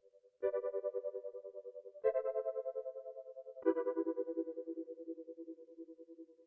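Music: sustained keyboard chords with a fast pulsing tremolo. A new chord is struck about every second and a half, three times, and each fades as it holds. It sounds like the quiet instrumental intro before singing comes in.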